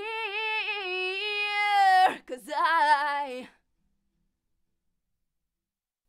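Recorded female lead vocal run through the PreSonus ADL 700 equalizer. She holds one long sung note for about two seconds, then sings a short phrase, and the voice cuts off about three and a half seconds in.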